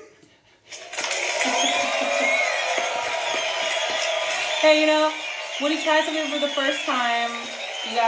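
Canned applause and cheering sound effect, starting abruptly about a second in and running on steadily, with the performers laughing and talking over it in the second half.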